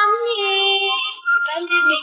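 A song with a high, child-like singing voice, held notes moving from one pitch to the next.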